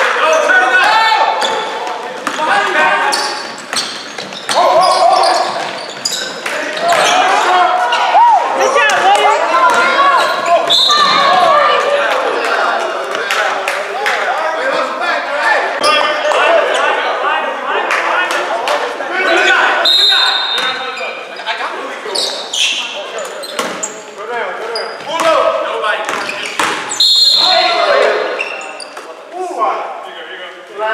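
Live basketball play in an echoing gym: a ball dribbling and bouncing on the hardwood floor, with players and coaches shouting throughout. Three short high whistle blasts sound, about ten seconds in, at twenty seconds and near the end.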